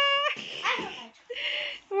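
A child imitating a puppy with a couple of short yips and whimpers, just after a drawn-out, sing-song call of a name.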